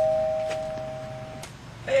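Two-tone ding-dong doorbell chime ringing out, its higher and lower notes fading together and stopping about one and a half seconds in.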